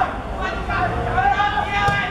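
Footballers shouting to each other, then near the end a single sharp thud as a football is kicked.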